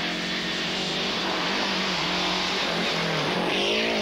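Lancia Delta rally car's engine running at a steady, unrevved pitch as the car drives along the stage. Its head gasket has gone from overheating. A rush of noise swells near the end.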